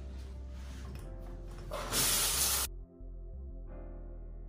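Background music, with a loud burst of water spraying from a shower head a little before the middle that lasts about a second and cuts off suddenly.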